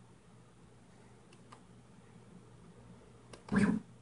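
Quiet room tone with a faint steady low hum and a few faint clicks, then a short, loud burst of sound near the end.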